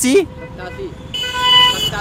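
A vehicle horn honks once, a steady note lasting under a second a little past the middle, over passing street traffic.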